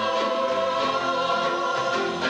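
Mixed choir singing sustained notes with acoustic guitars, keyboard and violin accompanying; the pitches shift near the end.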